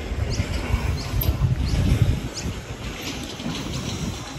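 Outdoor ambience: a low, uneven rumble of wind buffeting the microphone, with a small bird giving short, high, rising chirps several times.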